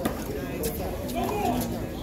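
Voices of players and onlookers talking, with two sharp knocks near the start about two thirds of a second apart, in the manner of a handball being struck.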